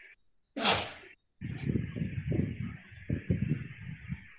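A single short, loud breathy outburst from a person close to a microphone about half a second in, followed by low, muffled, irregular sounds under a steady hiss from the call's audio.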